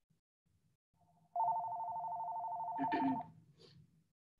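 Electronic telephone ringer trilling: a rapid two-tone warble held for about two seconds, starting about a second and a half in, with a brief faint sound as it ends.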